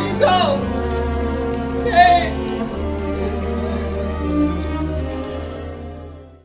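Background music with long held notes over a steady low drone. Short voice-like cries break in just after the start and again about two seconds in. The music fades out near the end.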